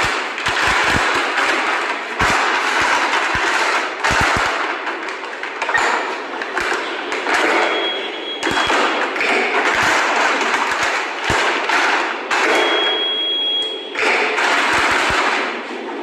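Sterilization pouch wrap crinkling and rustling as it is handled and packed, with scattered knocks and taps on the table. Twice a brief high steady tone sounds, the second lasting over a second.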